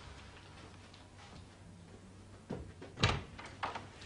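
A door being opened: a few sharp knocks and clicks of the latch and door, the loudest about three seconds in, after a quiet stretch.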